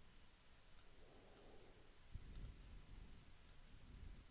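Near silence with a few faint computer mouse clicks, scattered singly and in a quick pair, and a couple of soft low thumps.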